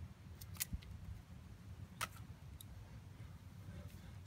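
Garden scissors handled and cutting twine: a few faint clicks, then a sharper snip about two seconds in, over a low steady background rumble.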